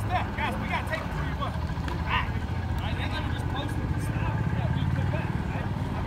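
Indistinct voices of football players and coaches calling out across a practice field, none of it clear speech, over a steady low rumble that swells a little past the middle.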